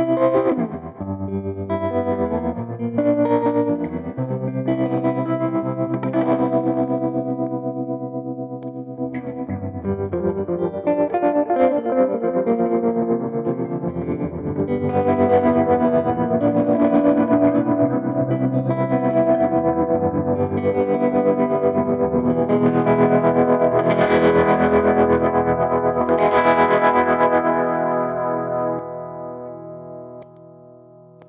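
B.A. Ferguson Flyweight electric guitar played through a board of effects pedals, a run of chords and single-note lines that grows fuller about halfway through and fades out near the end.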